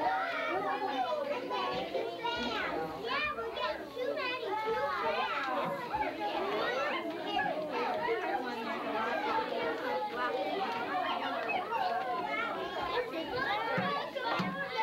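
Many young children talking and calling out at once, a steady babble of overlapping voices with no one voice standing out.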